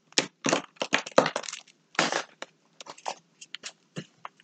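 A large sheet of drawing paper being slid and shifted about on a table. It rustles and crinkles in a string of short, irregular bursts.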